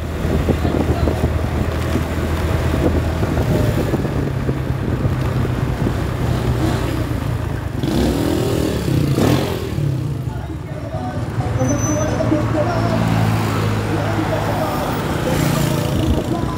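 A motor vehicle's engine running as it drives along a street, its pitch shifting with speed, over steady road and wind noise. A motorcycle passes about eight seconds in.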